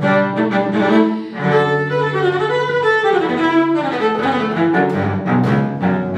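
Solo cello bowed in a fast, virtuosic passage, notes changing quickly one after another.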